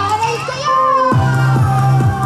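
Yosakoi dance music played loud over loudspeakers. A short break holds a rising sweep and voices calling out, then a driving electronic beat with a kick drum about twice a second comes back in about a second in.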